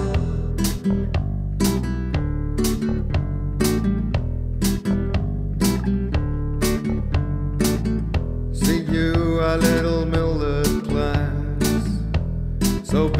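Admira Artista nylon-string classical guitar playing strummed chords in a steady rhythm, an instrumental passage between sung verses.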